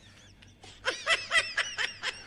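A person laughing in a quick run of short snickers, starting just under a second in.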